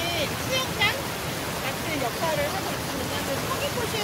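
Stream water spilling over a small dam and low rocks: a steady rushing of flowing water, with a voice heard over it.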